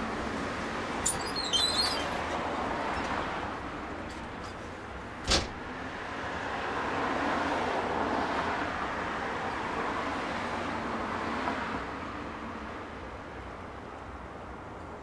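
Passing road traffic: a steady wash of tyre and engine noise that swells and fades. A single sharp click comes about five seconds in, and a few brief high chirps come in the first two seconds.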